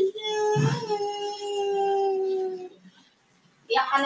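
A person's voice drawing out a long, wailing "aaay" that slides down in pitch and then holds a steady note before breaking off. After a short pause, another short "ay" starts near the end.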